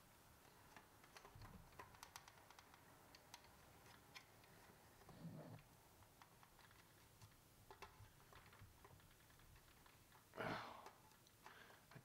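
Faint, scattered clicks and light scraping of a small plastic trim panel removal tool prying at the snap tab of a vintage hard plastic toy plane's tail fin, over near silence. The tool is failing to get the purchase it needs to release the tab.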